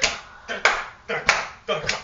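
A person jumping and flailing about the room, making a quick run of short, loud sounds, mostly in pairs, a pair about every half second.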